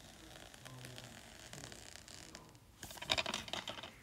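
Plastic DVD case handled and turned over in the hand: faint scratching and rubbing, with a louder run of clicks and scrapes about three seconds in.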